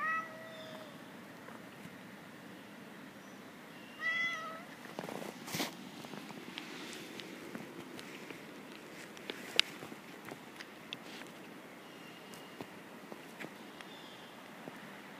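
Domestic cat meowing twice: a short call at the start and another about four seconds in. It is uneasy in unfamiliar surroundings. A sharp click comes about ten seconds in.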